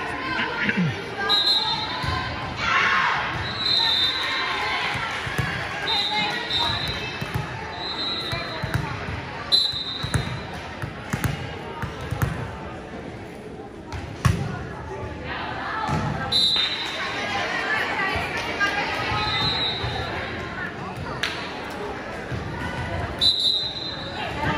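Gym court sounds: athletic shoes squeaking on the hardwood floor again and again, a few sharp smacks of a volleyball, over the chatter of players and spectators in the echoing hall.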